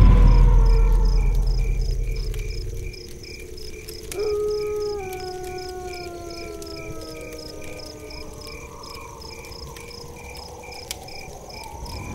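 Horror film soundtrack: a deep low boom fades out over the first three seconds under steady, evenly pulsing cricket chirps. From about four seconds in, eerie long tones slide slowly down in pitch.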